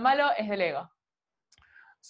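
Speech only: a voice talking for about the first second, then a short pause.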